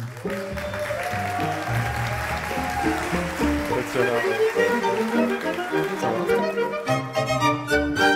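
A chamber string orchestra, violins and cello, playing a short lively tune of quickly changing notes, with audience applause under roughly the first half.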